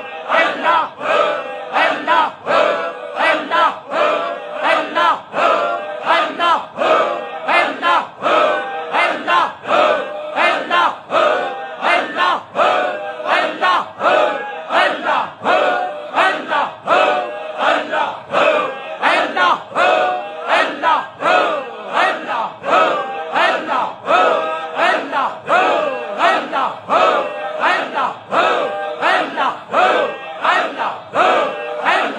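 A congregation chanting a dhikr litany together in a steady, rhythmic pulse of about two beats a second.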